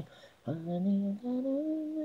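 Solo female voice singing unaccompanied, an isolated a cappella vocal track. After a brief pause about half a second in, it holds a soft line that steps up in pitch twice.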